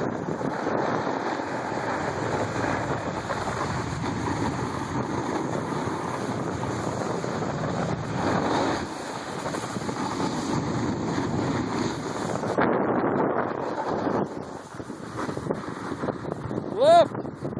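Wind rushing over the microphone at downhill speed, mixed with the steady hiss and scrape of sliding on packed, groomed snow. The rush swells about halfway through and eases for a moment near the end.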